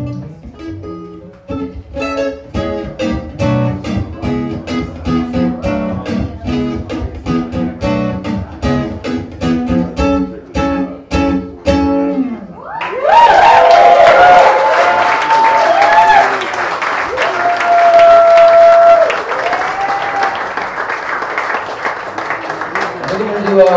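Acoustic guitar picked in a steady rhythm, closing out a song about twelve seconds in. The audience then breaks into loud applause and cheering with several long whistles.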